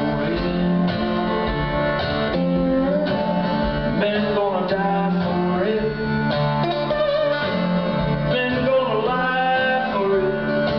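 A 20-string Mohan veena played lap-style with a slide, in a blues riff: plucked notes that glide up and down in pitch over low notes that keep ringing.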